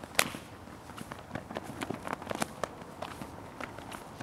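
Footsteps and light handling noises of a flag-waver (vendelier) moving through a flag-waving demonstration: irregular soft taps and ticks, with one sharper tap just after the start.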